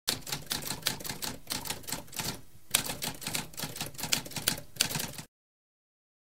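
Typewriter typing: a quick run of key strikes, several a second, with a short pause about two and a half seconds in, followed by one louder strike. The typing stops about five seconds in.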